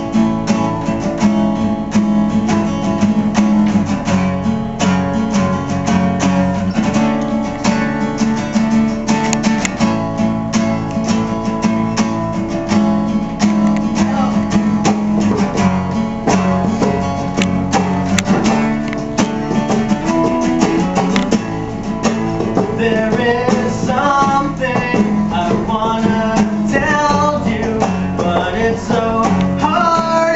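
Two acoustic guitars strummed together, opening the song; a man's singing voice comes in about two-thirds of the way through.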